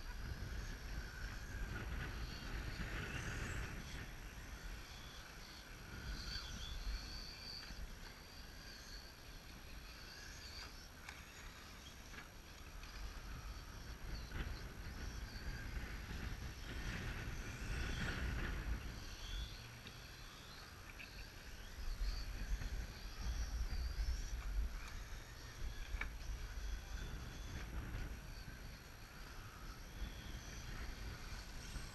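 Electric RC race cars with brushless motors whining faintly as they run laps, the whine coming and going, over a low rumble that swells and fades.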